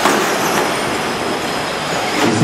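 Radio-controlled off-road race trucks running on an indoor dirt track: a steady, noisy whir of motors and tyres.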